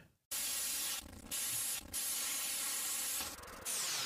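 Edited-in transition sound effect: bursts of static-like hiss broken by a few short gaps, ending in a falling sweep.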